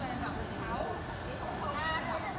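People talking in the background, with fairly high, gliding voices.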